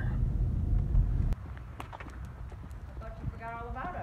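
Low road rumble inside a moving car's cabin, cut off suddenly a little over a second in. After it come a quieter open-air scene with scattered footstep-like clicks and a brief drawn-out vocal call near the end.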